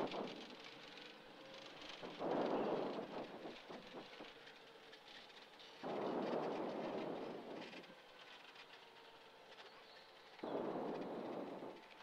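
Three gusts of air rushing over the microphone, each lasting about a second, over the faint steady hum of a single-engine light aircraft's idling engine as it sits with its propeller turning.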